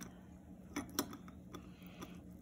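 Two light clicks of a metal spoon against a stainless-steel mesh strainer as grated cucumber is spooned in, close together a little under a second in, over faint room tone.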